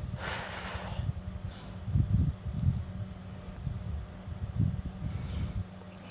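Wind rumbling on the microphone, with a soft breath of about a second near the start and a shorter, fainter breath near the end.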